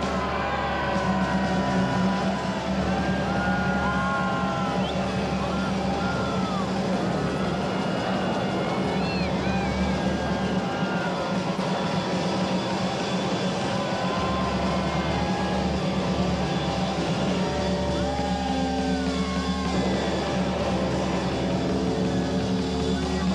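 Live rockabilly band playing an instrumental passage with no vocals: electric guitar lead with bent, sliding notes over a steady bass and drums.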